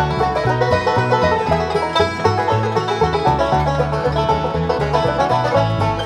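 Bluegrass ensemble playing: several five-string banjos picking rapid notes over guitar, fiddle and a steady upright bass line.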